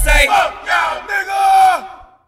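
Close of a hip hop track: the beat drops out about a quarter second in, leaving several voices shouting. One drawn-out yell falls in pitch and fades out near the end.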